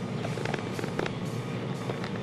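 Steady drone of a light aircraft's engine heard inside the cockpit.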